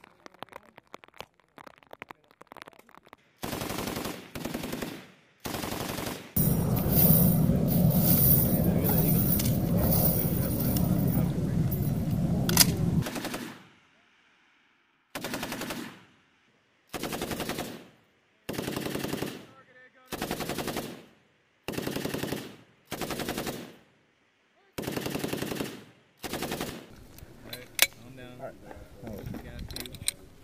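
M240B 7.62 mm belt-fed machine gun firing on automatic: a couple of short bursts, then one long stretch of fire lasting about seven seconds, the loudest part. After a brief pause comes a steady run of short bursts, each about a second long and spaced a second or so apart.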